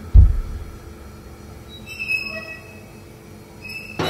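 A single heavy, low thump near the start, fading away, then a faint high-pitched squeak about two seconds in, with another just before the end: house noises from overhead that the babysitter takes to be the children in the attic.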